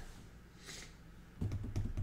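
Near quiet room tone, then from about one and a half seconds in a quick run of light clicks and taps.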